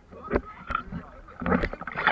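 Sea water splashing and sloshing close by as swimmers in life jackets move against the side of a boat. There are sharp splashes about a third of a second in, just under a second in, and a longer flurry around a second and a half in.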